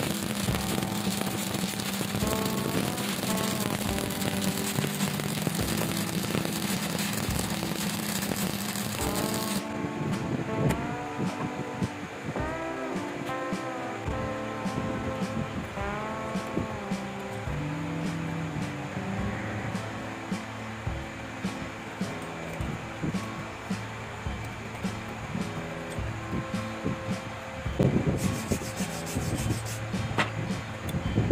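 Stick-welding arc crackling steadily for about the first ten seconds, then cutting off suddenly, with background music playing throughout. Near the end, a run of sharp knocks as slag is broken off the finished weld bead.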